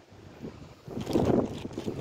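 Wind buffeting the microphone as an uneven rumble, with a stronger gust about a second in.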